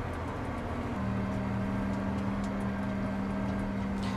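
Valtra tractor engine running steadily under way, heard from inside the cab; a steady low tone joins the drone about a second in.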